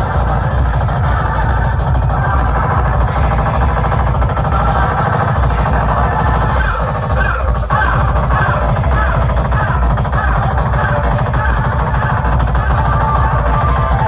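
Loud electronic dance music with heavy, fast bass beats, played through huge stacked sound-system speaker boxes. About halfway in a short synth figure starts repeating roughly twice a second over the beat.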